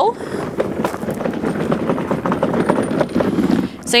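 Garden utility wagon being pulled over gravel: a steady crunching rattle of its wheels on the stones, mixed with footsteps on the gravel, easing off just before the end.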